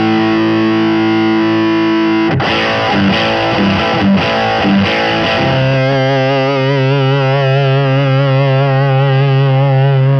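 Telecaster played through a Marshall overdrive pedal into a Dr Z MAZ tube amp, giving a distorted electric-guitar tone. A ringing chord gives way about two seconds in to a quick run of picked notes. Then a long chord is held with a wavering vibrato until it cuts off near the end.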